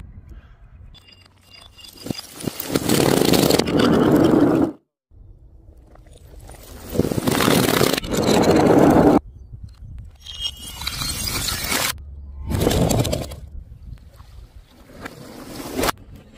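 A run of separate bursts of loud scraping and crunching noise, each lasting one to three seconds and ending in a sudden cut. The loudest burst comes in the middle, as glass bottles slide down a chute onto paving.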